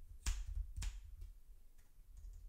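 Scissors snipping through wool yarn wound on a plastic pompom maker: two sharp snips about half a second apart, then two fainter ones.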